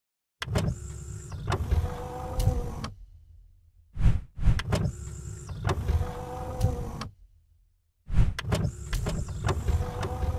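Animated-outro sound effects: a motorised sliding whir with heavy thuds, the same cycle played three times about every four seconds, with short silent gaps between.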